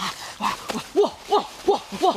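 A man's voice making short hooting calls, each rising then falling in pitch, repeated about three times a second and quickening toward the end.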